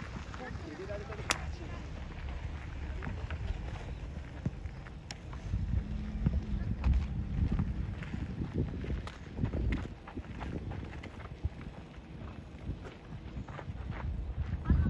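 Open-air football pitch sound: low wind rumble on the microphone, with distant voices of players and coaches calling out across the field. Two sharp knocks, one just over a second in and one about five seconds in, are the ball being kicked.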